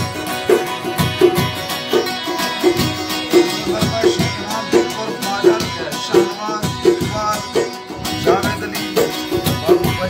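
Balochi folk instrumental: long-necked string instruments playing held tones over a steady rhythmic pulse of about three beats every two seconds, with no singing.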